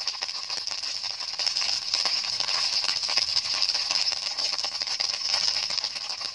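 Meatballs and chopped garlic sizzling in hot oil in a frying pan: a steady hiss with scattered crackles and pops.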